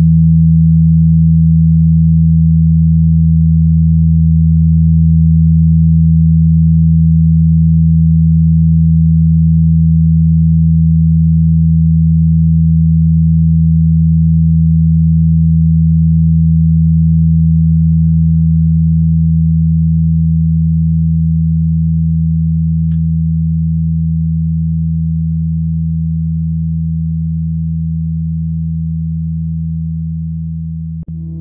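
Minimal electronic drone music: a loud, steady bank of low sine-like tones held without change, slowly fading over the second half.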